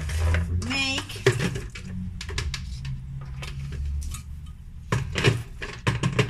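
Kitchen glassware and containers handled on a counter: a series of separate clinks and knocks, the loudest cluster near the end, over a steady low hum.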